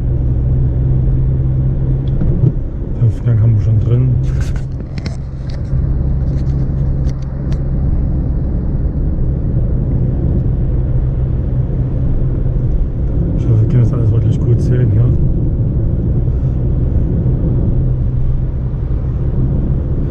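Car engine and road noise heard from inside the cabin while driving at about 65 km/h: a steady low drone.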